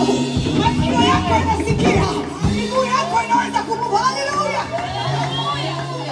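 Live church worship music: a woman's voice through a microphone leads over an accompaniment of held low notes that change every second or two, with other voices joining in.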